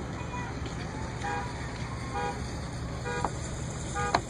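Steady engine and road noise heard inside a vehicle's cab as it drives slowly. Four short, steady-pitched tones sound over it, about a second apart.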